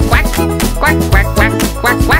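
A string of duck quacks in time with a bouncy children's-song backing that has a steady beat.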